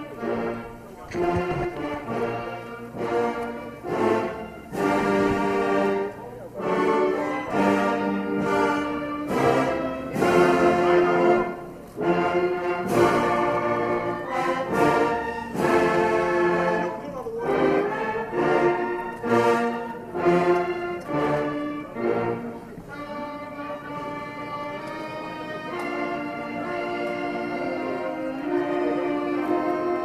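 A band plays a national anthem: a slow, measured melody in full chords with accented phrases. About two-thirds of the way through it drops to a quieter, more sustained passage.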